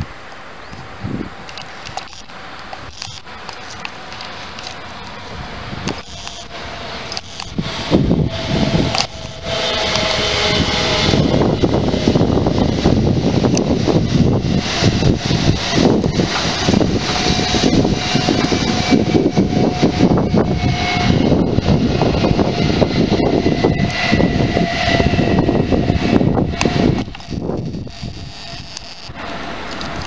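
A Renfe Talgo train passing close by at speed. Its rushing roar builds over several seconds, stays loud with a faint steady whine for about fifteen seconds, then falls away near the end.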